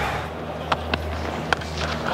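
Sharp crack of a cricket bat striking the ball, a clean, powerful hit that sounded huge, about one and a half seconds in. A couple of quieter knocks come just before it, over a steady low stadium hum.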